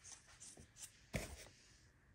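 Packaging being handled during an unboxing: a short sharp rustle about a second in among a few faint small clicks, the rest near quiet.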